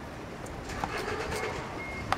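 Open-air ballpark ambience at batting practice, with a couple of faint knocks from bats and balls about halfway through. A thin, steady high tone starts a little past halfway and holds.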